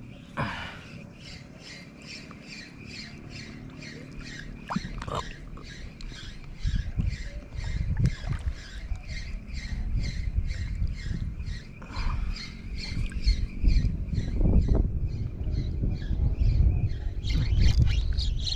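Spinning reel being cranked on a lure retrieve, giving a steady, even squeak or tick with each turn of the handle, about three a second. A low rumbling noise builds from about a third of the way in and grows louder.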